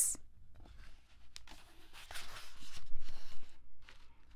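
Paper rustling for about two seconds, as a page of the book is turned, after a faint click.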